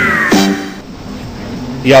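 Short transition jingle between news items: a falling whistle-like glide ends and a brief pitched note is held, then the sound dips to a quieter stretch. A voice starts over music near the end.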